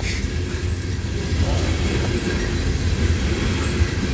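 Loaded coal hopper cars of a freight train rolling past on jointed track, with a steady low rumble of steel wheels on the rails.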